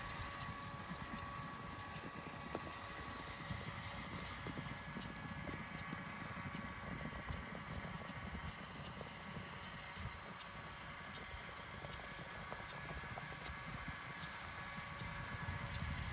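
A herd of Thoroughbred horses galloping over dry dirt: a continuous, irregular patter of many hoofbeats.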